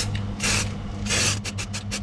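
Aerosol spray can of silver undercoat paint spraying onto a small part: two longer hisses in the first half, then a quick run of short puffs, several a second.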